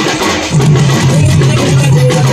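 Loud live folk dance music: a barrel drum slung at a musician's waist beaten in a steady rhythm, under a melody played on a wind instrument.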